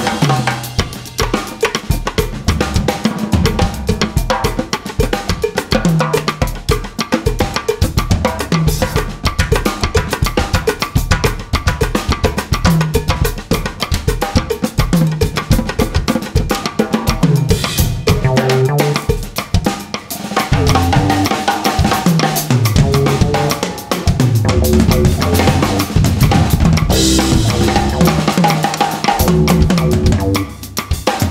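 Several drum kits played together in a loose, busy jam: snares, bass drums and cymbals, with a keyboard carrying a stepping bass line and chords underneath.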